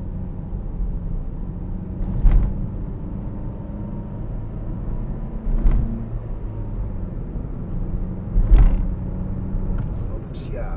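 Car driving, heard from inside the cabin: a steady low rumble of road and engine noise with a faint hum. Three short sharp thumps stand out, about two seconds in, a little past halfway and near the end.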